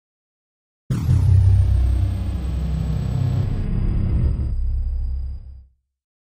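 Deep, loud rumble of an intro sound effect with a thin high tone sliding downward, starting suddenly about a second in and dying away near the end.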